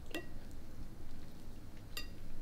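A metal fork clinking against a plate twice, once just after the start and once near the end, each a short ringing chink.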